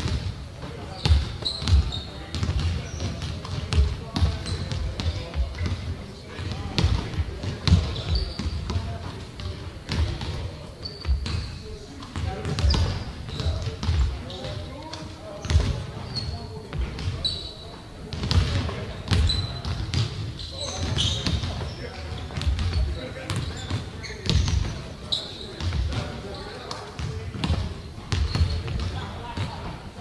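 Several basketballs bouncing on a hardwood gym floor, many irregular thuds in a large echoing gym, with short high sneaker squeaks scattered among them.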